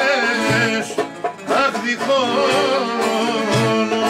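Live Greek folk song: a man singing with a laouto strummed beneath him and other folk instruments playing along. There is a brief lull a little over a second in.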